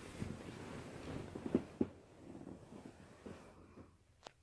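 Quiet spritzing of a plastic trigger spray bottle misting water onto curly hair, with hands rustling through the hair and a couple of soft knocks about a second and a half in.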